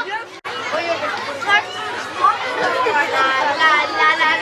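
A group of children chattering and calling out over one another. The sound drops out briefly just under half a second in.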